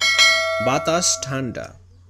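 Bell-chime sound effect of a YouTube subscribe-button animation: a single struck bell that starts sharply, rings with several steady tones for about a second and a half, then stops.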